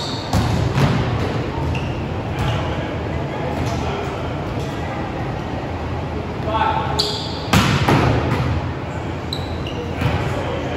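Volleyball quick attacks in a large gym: the hitter's hand smacks the ball and it hits the floor and bounces, with the hall ringing after each impact. There are two attacks, one just after the start and a louder one about seven and a half seconds in.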